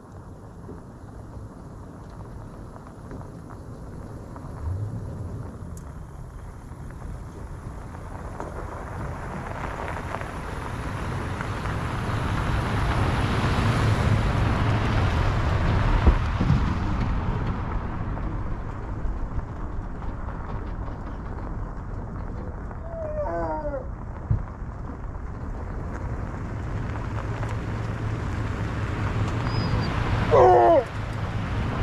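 A pickup truck towing a livestock trailer drives past on a gravel dirt road: engine and tyre-on-gravel noise build to a peak partway through and fade. A second truck and trailer can be heard approaching near the end.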